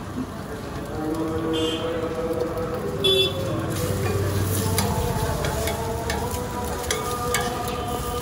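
Omelettes and buns sizzling on a large flat iron griddle (tawa), with a metal spatula clinking and scraping on the iron, the loudest clink about three seconds in and more towards the end. Busy street noise runs underneath.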